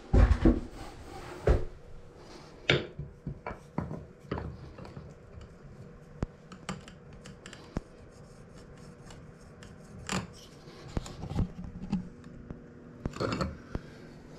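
Tile and trim pieces being handled and set against the wall, with scattered knocks, clicks and light scraping as a pencil marks the trim. The loudest knocks come in the first second or so, over a faint steady hum.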